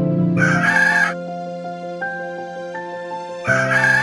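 Background music with held notes, with a short rooster crow coming in twice, once near the start and once near the end.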